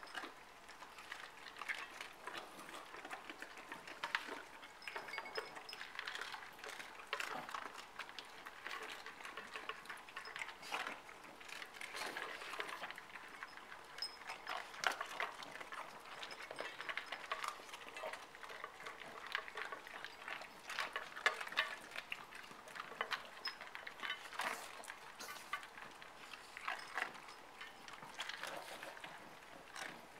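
Several dogs eating from their food bowls: irregular crunching and chewing throughout, with small clinks and knocks of the bowls.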